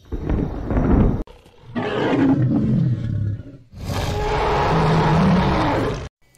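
Three long, rough film-dinosaur roars in a row. Each lasts one to two seconds with a short gap between them, and the third is the longest.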